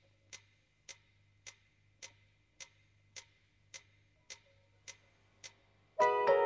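Evenly spaced clock-like ticks, a little under two a second, over a faint low hum, at the start of a record track; full music begins at the end.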